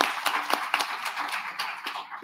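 Audience applauding, many hands clapping at once, the applause fading toward the end.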